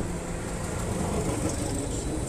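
Motor traffic: vehicle engines running in slow street traffic, a steady low rumble.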